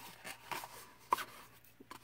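Faint paper handling as a rolled tube of designer series paper is pressed together at its glued seam: soft rustles and a few light ticks, the sharpest about a second in.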